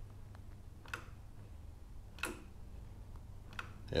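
The front brake lever of a Harley-Davidson Street Glide is squeezed and released to check brake pressure after a bleed, giving three faint, sharp clicks about a second in, just past two seconds and near the end.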